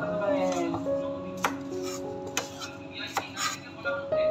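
Background music with held notes, over which a kitchen knife slices a cucumber on a plastic cutting board: a few sharp knocks of the blade on the board.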